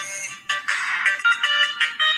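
Electronic phone ringtone: a melody of short, high, clear notes that comes in louder about half a second in.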